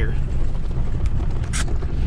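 Pickup truck's engine and tyre rumble heard from inside the cab while driving across a field, with a brief sharp noise about one and a half seconds in.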